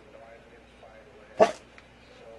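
A terrier gives one short, sharp bark about one and a half seconds in.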